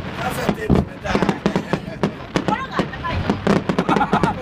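Aerial fireworks bursting overhead, a quick run of many sharp cracks and pops from large white starburst shells.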